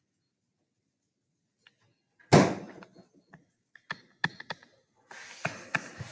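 A single thump about two seconds in, followed by scattered light taps and soft scratching of a stylus drawing on a tablet.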